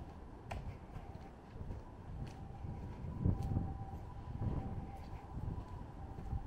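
Quiet outdoor street ambience: a low rumble with a faint steady hum, and a few light clicks scattered through.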